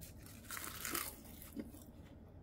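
Crunchy chewing of a mouthful wrapped in crisp seasoned laver (gim), heard close up. The main crackle comes about half a second in and lasts around a second.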